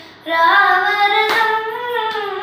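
A young girl singing a Carnatic devotional song in raga Yamuna Kalyani. After a brief breath she holds one long, ornamented note that climbs gently and starts to bend down near the end.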